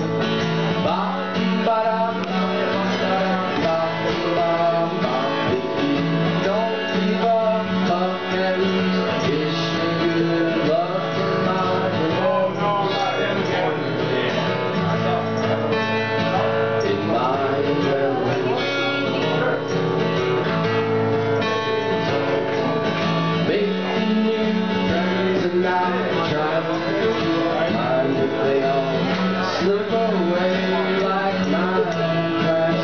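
Acoustic guitar played steadily in a live solo performance, with a man's singing voice over it.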